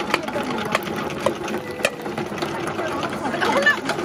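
Electric tomato-passata machine running steadily as tomatoes are pushed down into it with a plunger, with a few sharp knocks in the first two seconds.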